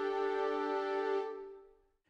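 Sampled orchestral chord from the Spitfire Studio Strings violin sections, blended with the solo flute and solo clarinet of the Studio Woodwinds core library, held on a keyboard. It is released and dies away about a second and a half in.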